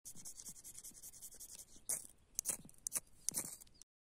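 A small metal tool scraping birch bark to shave tinder for a fire: a run of quick light scrapes, then several sharper, louder strokes in the second half.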